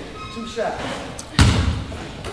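A single loud basketball bounce on the hardwood gym floor about a second and a half in, echoing in the hall, as the ball is bounced over to the free-throw shooter. Voices are heard around it.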